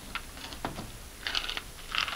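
Scattered light clicks and taps with brief rustles as thin craft sticks and small decorated cardboard drums are handled and lifted off a table.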